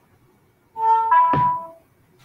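Moorebot Scout robot's speaker playing a short electronic chime of a few notes, stepping in pitch, during its Wi-Fi setup, with a soft thump partway through.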